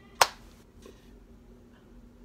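A single sharp hand clap, a fraction of a second in.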